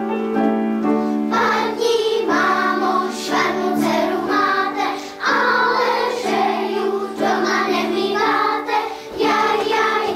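A children's choir singing in unison with piano accompaniment. The piano plays alone for about the first second before the voices come in.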